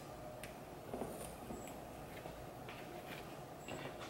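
Faint handling of mannequin hair and a plastic butterfly clip being fastened, with a few light clicks and touches spread through the quiet.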